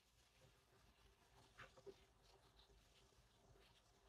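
Near silence: room tone, with a few faint small sounds about halfway through.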